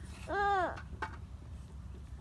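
A young child's short wordless vocal sound, a single note that rises and falls in pitch for about half a second, followed by a single click about a second in, over a low steady rumble.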